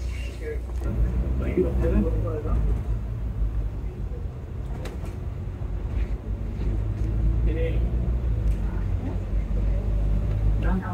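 Volvo B9TL double-decker bus's six-cylinder diesel engine running with a steady low drone, mixed with road noise, as heard from the upper deck. A couple of light clicks or rattles come around the middle.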